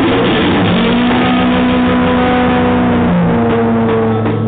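Live band music, led by an electric guitar holding long, sustained distorted notes that change to a lower note a little after three seconds in.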